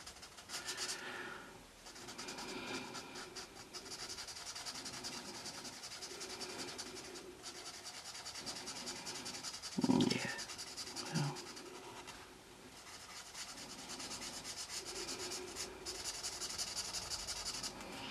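Winsor & Newton Promarker alcohol marker's nib rubbing on colouring-book paper in quick, repeated back-and-forth strokes while filling in a solid area of colour, pausing briefly about twelve seconds in.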